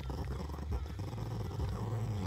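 Small dog growling with its teeth bared, a low continuous growl made of fast fine pulses, without a break.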